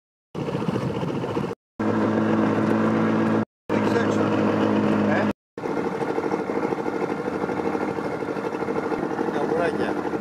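A boat's engine running at a steady pitch, broken by three brief silent gaps where clips are cut together.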